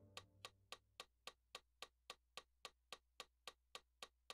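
Faint metronome clicking steadily at about three and a half ticks a second, as the last keyboard notes die away in the first second.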